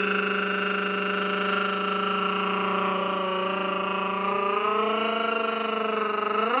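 A man's voice holding one long, steady drawn-out vocal note, sagging a little in pitch near the end.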